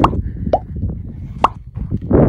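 Three short pops from an on-screen subscribe-button animation's sound effects, over a steady low rumble.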